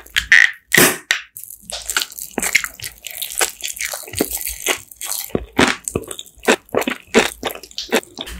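Close-miked eating: a fast, irregular run of crunches as food is bitten and chewed.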